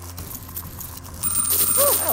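Tipping Point machine counters clattering as they are pushed off the lower shelf and drop into the payout tray. About a second in, louder audience cheering and whooping comes in, with a steady high ringing tone.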